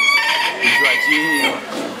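A rooster crowing: a long, high call that ends about a second and a half in.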